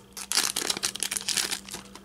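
Foil wrapper of a Fleer Ultra baseball card pack crinkling as it is pulled off the cards, a run of rustles that thins out near the end.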